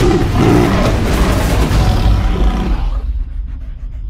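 Black panther roaring as it pounces, a loud, dense roar that dies away about three seconds in.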